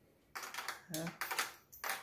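Several short scraping and tapping strokes of a spoon working soft fruit gelato into a small glass jar.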